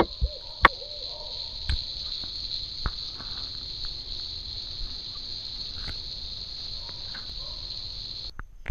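Night chorus of crickets or other insects, a steady high-pitched drone, with a few sharp knocks about one and two and three seconds in.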